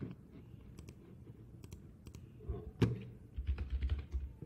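Computer keyboard being typed on: a few scattered key clicks, then a quick run of keystrokes near the end as a short word is typed.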